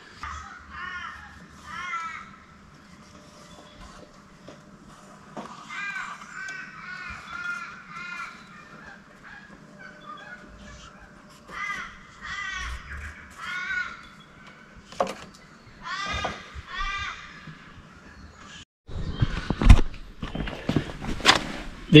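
Crows cawing in the background, drawn-out calls given in bouts of several at a time. Near the end a few loud knocks and handling clatter.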